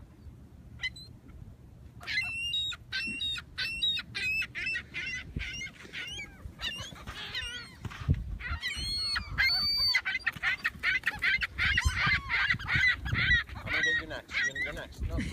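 A flock of gulls calling while crowding in to be hand-fed. Short squawks begin about two seconds in and build into a dense, overlapping chorus in the second half.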